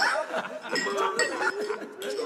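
Several voices chattering over one another, with glasses clinking now and then.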